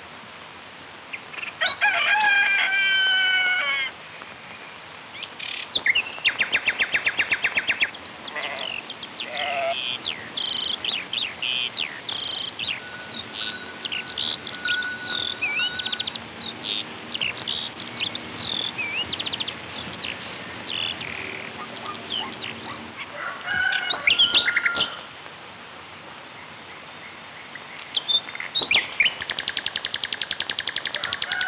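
Birds singing: a string of short chirps and whistled notes, with fast trills about six seconds in and again near the end. A longer call with several overtones comes about two seconds in and again near the 24-second mark.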